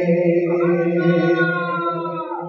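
A man singing a naat without instruments, holding one long sung note.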